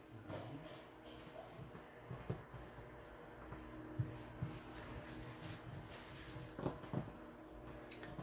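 Faint handling noise of hands pressing and stretching a thin, butter-brushed sheet of yeast dough on a work surface: soft rubbing with a few light taps.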